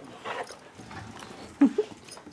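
Dogs playing with a rope chew toy, with mouthing and scuffling, and a dog giving two short vocal sounds near the end.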